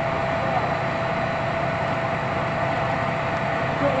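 Aircraft on the tarmac running steadily: an even roar with a constant mid-pitched whine, typical of an airliner's auxiliary power unit or idling engines.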